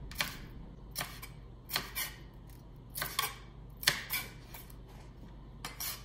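Chef's knife slicing mini sweet peppers on a plastic cutting board: about ten sharp knife taps, irregularly spaced, several coming in quick pairs.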